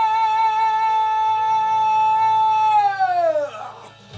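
A woman singing into a microphone over a backing track, holding one long, high belted note, then sliding down in pitch and trailing off about three and a half seconds in.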